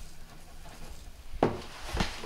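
Dishwasher powder poured softly from a plastic drain-back bottle into the detergent cup of a dishwasher door, then a sharp click about one and a half seconds in and another near the end as the hand moves to the dispenser.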